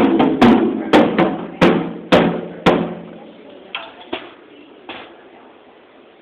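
A young child hitting a drum kit with sticks: six loud, uneven strikes about half a second apart, each ringing on, then a few faint taps before he stops.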